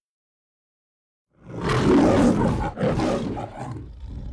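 The MGM logo lion roar: after a moment of silence, a lion roars about a second and a half in, then roars again more softly, the sound trailing on past the end.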